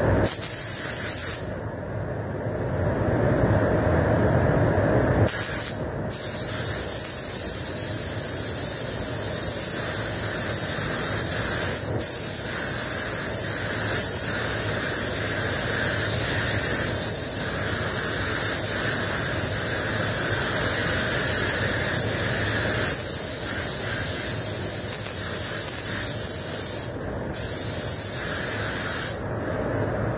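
SATA RP spray gun spraying clear coat at about 2 bar: a steady high hiss of air and atomised paint. It stops for a few seconds near the start and breaks off briefly twice near the end as the trigger is let go.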